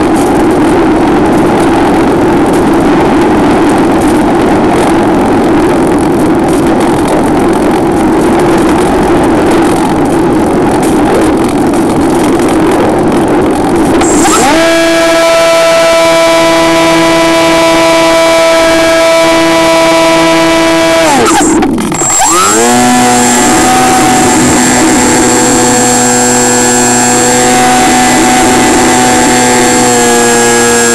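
Radio-control model plane's motor and propeller heard from an onboard camera in flight, with wind rush. For the first half the sound is a rough, noisy whirr; about halfway it settles into a steady whine. A little past two-thirds through, the pitch drops sharply and climbs back, as when the throttle is cut and reopened, then holds at a lower steady whine.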